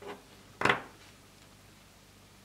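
Fingers handling a small jersey made of rubber loom bands: one short, sharp noise about two-thirds of a second in, after a faint one at the start, over a low steady hum.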